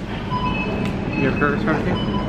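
Supermarket checkout ambience: a steady low rumble of store noise with murmured voices and a few short, high electronic tones.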